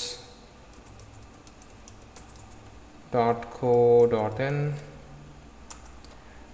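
Typing on a computer keyboard: a run of faint, quick key clicks as a web address is entered.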